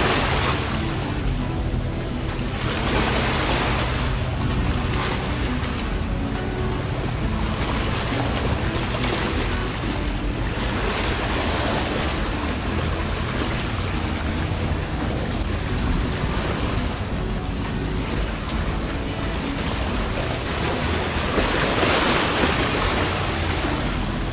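Wind buffeting the microphone over choppy open water, in gusts that swell and fade every few seconds, with a low steady hum of boat engines underneath.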